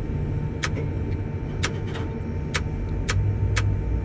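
Steady low hum of a tower crane cab with its machinery running, crossed by sharp short ticks about once a second.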